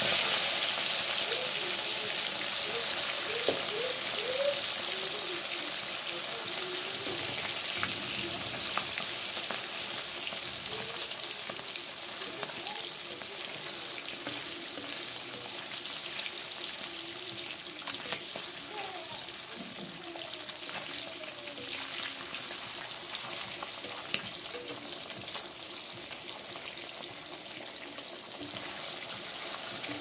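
Pieces of katla fish frying in hot oil in a kadai: a steady sizzle that slowly grows quieter.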